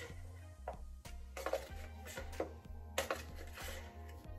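Faint background music, with a few light clicks and taps of a measuring spoon against a bowl as paprika is scooped and tipped in.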